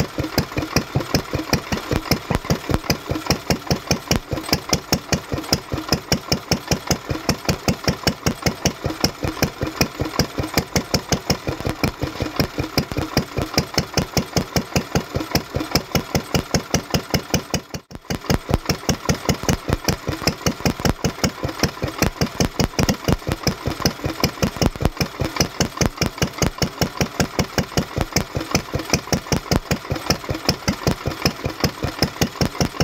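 Lister stationary engine running steadily, a regular even beat of firing strokes, with a brief dropout a little past halfway.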